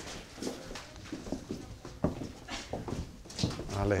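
Footsteps of several people walking on a hard floor, with indistinct voices in the background and a drawn-out voice sound near the end.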